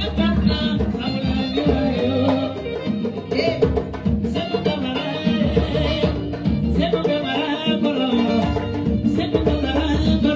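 Live band music: an electric keyboard with djembe hand drums keeping a steady driving beat.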